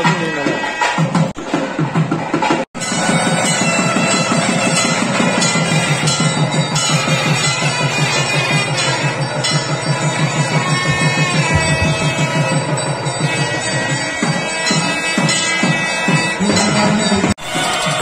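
Temple ritual music: a double-reed wind instrument playing a continuous melody over a fast, steady drum rhythm. The music breaks off briefly twice, about three seconds in and near the end.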